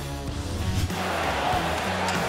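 A short musical sting for a broadcast transition graphic, ending about a second in, followed by the steady hum of an arena crowd.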